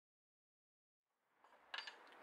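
Dead silence for over a second, then faint background fades in and a quick metallic clink or two sounds near the end, from the Allen key coming off a tightened bolt on the hedge trimmer head.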